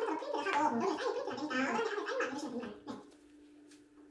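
Faint, indistinct voices of men talking, muffled and hard to make out, fading to near silence about three seconds in.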